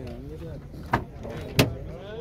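Chevrolet Spark's front door being opened: two sharp clicks from the handle and latch, a little over half a second apart, the second louder.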